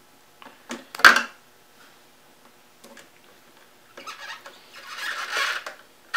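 Small clicks and a sharp clack about a second in as a screw is handled and set against the case's mounting holes, then, from about four seconds in, a rasping that grows louder as a Phillips screwdriver drives the screw into the threads of the aluminum radiator.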